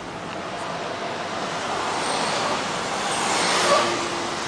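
Road and traffic noise from inside a moving car, a steady rushing that swells to a peak near the end.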